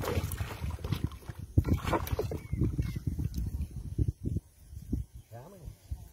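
Water splashing and sloshing against a wooden canoe as a hooked tambaqui is fought on a pole line, with irregular low knocks and rumble; a sharper splash comes about a second and a half in. A short voiced grunt is heard near the end.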